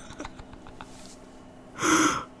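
A person's sharp, audible intake of breath near the end, after a quiet stretch.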